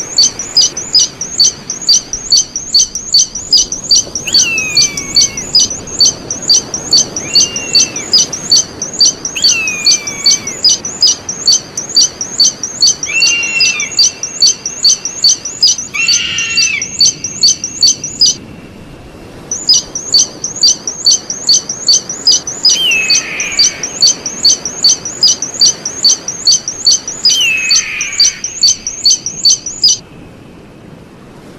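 Eagle calling: a fast, even series of high, sharp piping notes, about two or three a second, with a lower, downward-slurred call every few seconds. The series breaks off for about a second partway through, then resumes.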